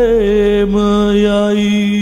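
A male voice holding a long sung note in a slow song, over soft sustained accompaniment.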